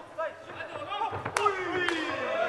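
A kickboxing strike landing: two sharp smacks about one and a half seconds in, over faint voices from ringside.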